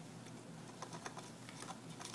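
A gerbil gnawing on the edge of a wooden block: a few faint, sharp, irregular clicks of teeth on wood.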